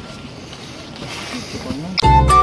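Steady rushing noise of wind on the microphone of a handheld camera outdoors, growing a little louder toward the end.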